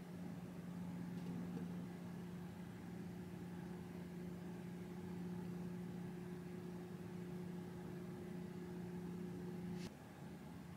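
Faint, steady low mechanical hum with a light hiss, room tone of a small office, cutting off with a faint click near the end.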